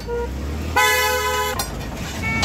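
A vehicle horn honking: a short toot right at the start, then one steady blast of just under a second, beginning about three-quarters of a second in.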